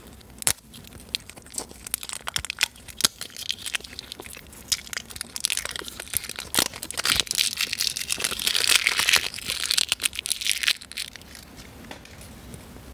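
Thin printed plastic film wrapper being peeled and torn off a plastic toy egg: scattered sharp crackles, thickening into dense, louder crinkling from about halfway through until near the end.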